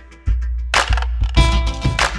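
Hip hop beat with deep bass and held synth notes, punctuated by sharp drum hits. The music drops out briefly at the very start, then the bass comes back in.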